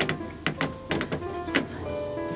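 Background music with held notes over several sharp clacks and a mechanical hum from an old cage lift moving between floors.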